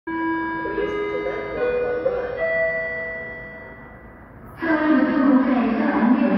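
Electronic station chime: a short melody of steady ringing notes. About four and a half seconds in, a louder voice starts, a public-address announcement of the approaching train.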